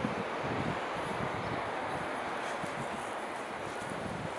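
Steady outdoor wind noise, with gusts buffeting the microphone in an uneven low rumble.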